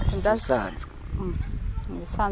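A short vocal sound from a person's voice near the start, over a steady low rumble.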